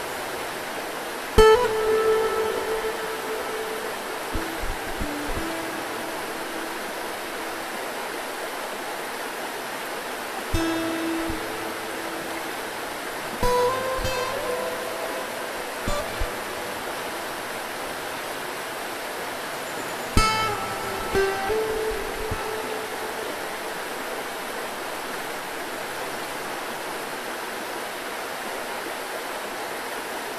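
Steady rush of a shallow rocky river, with sparse plucked acoustic guitar notes and chords ringing out and fading now and then, about a second in, around ten to sixteen seconds in, and again around twenty seconds.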